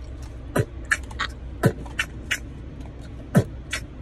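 A person beatboxing a hip-hop beat with the mouth: deep kick-drum booms that drop in pitch, with sharp snare and hi-hat clicks between them, inside a car over a low steady hum.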